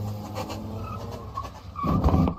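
A car pulling away across a parking lot, its engine and tyres heard faintly, then a sudden louder noise near the end.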